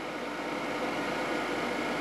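Blowers of a solar heating system, a large in-line fan with smaller DC fans, running with a steady air noise and a faint hum.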